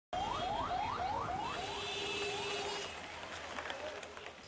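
Ambulance siren giving quick rising yelps, about three or four a second, over the hiss of congested street traffic; the yelps fade after about two seconds. A steady tone is held for about a second in the middle.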